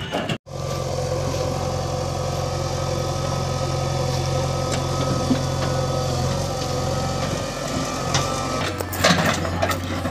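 Diesel engines of a JCB 3DX backhoe loader and a tractor running steadily under work. Near the end the engine note shifts and a short burst of metallic clanking is heard.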